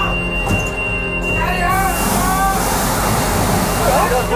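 An aircraft emergency evacuation slide inflating with a loud rushing hiss, starting about two seconds in, as the cabin exit door is opened. Before it a voice calls out, over a steady hum.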